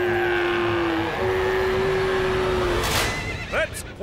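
A long held yell with one short break over a rushing noise, then a horse whinnies near the end.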